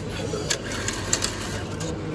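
Ticket vending machine's bill acceptor taking in a stack of banknotes, with a few sharp mechanical clicks about half a second in and again just after a second, over a steady background hum.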